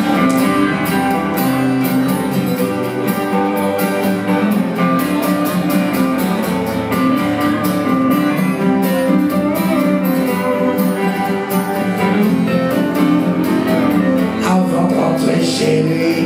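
Live band playing: electric and acoustic guitars strummed in a steady rhythm, with a man's voice singing near the end.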